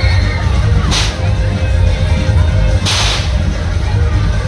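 Loud fairground music with a heavy bass, over which come short bursts of hiss, about a second in and again around three seconds.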